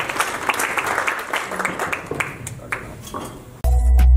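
Audience applauding, the clapping thinning out; shortly before the end it cuts off abruptly and loud electronic music with a heavy bass begins.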